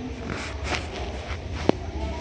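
Stifled, breathy laughter in a few short exhaled bursts, with one sharp click near the end, over a low steady hum.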